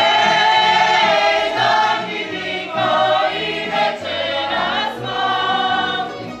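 A group of voices singing a folk song together, accompanied by tamburica strings and a bass that steps from note to note.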